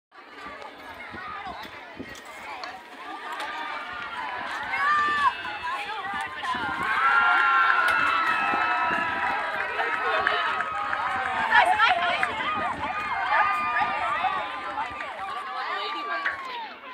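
A group of teenage girls talking and calling out over one another, many high voices overlapping. They get louder about six seconds in.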